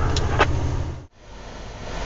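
Log truck's diesel engine and road noise heard inside the cab, a steady low drone. It cuts off abruptly about a second in, then returns more quietly.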